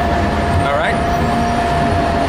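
Steady low rumble of city street traffic, with a continuous high whine held throughout. A short voice sound rises briefly about three-quarters of a second in.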